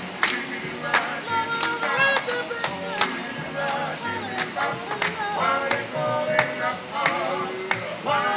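A group of men singing together in harmony, with hand claps on the beat about twice a second and an upright double bass playing low notes underneath.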